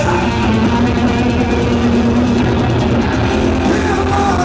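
Live heavy rock band playing loud and steady: distorted electric guitars and bass over a drum kit, in an instrumental stretch without vocals, heard from the audience through the arena's PA.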